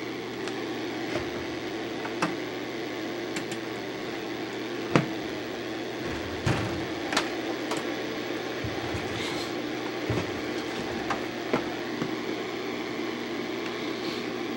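Steady electrical hum and hiss, broken by scattered sharp clicks, the most prominent about five, six and a half and seven seconds in.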